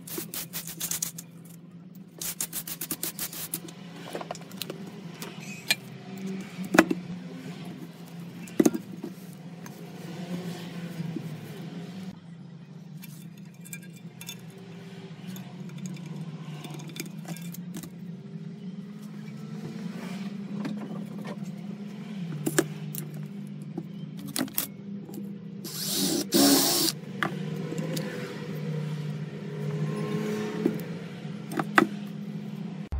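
Workbench handling noise: quick brushing strokes of aluminium swarf off a wooden bench at the start, then scattered clinks and knocks of a polished aluminium rocker cover and small hardware, with a louder scrape near the end, over a steady low hum.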